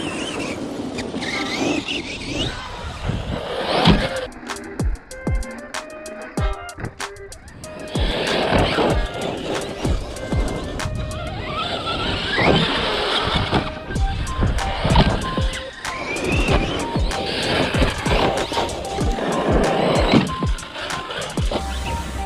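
Brushless electric motor of a 6S 1/8-scale RC basher truck whining up and down in pitch with the throttle, with repeated knocks and clatter from landings and the drivetrain. The clicking is what the driver says almost sounds like a loose pinion gear.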